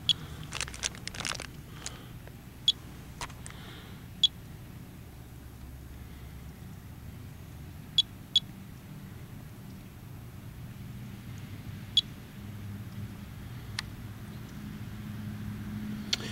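Monitor 4 Geiger counter clicking sparsely: single sharp clicks at irregular gaps of one to four seconds, about eight in all, with a brief burst of crackle near the start. The needle reads a low, background-level count.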